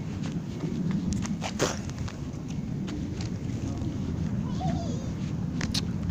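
Low rumbling handling and wind noise on a handheld phone's microphone while someone walks, with a few sharp clicks.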